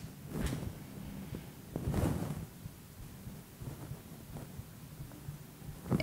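Quiet room tone with a few soft rustles and bumps of movement, the loudest about two seconds in.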